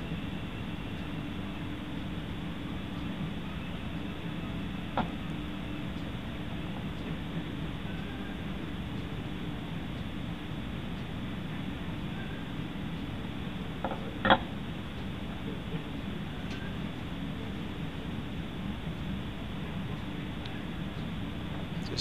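Bunsen burner running steadily on a gentle flame, heating a water bath. A light tap comes about five seconds in and a sharper knock about fourteen seconds in.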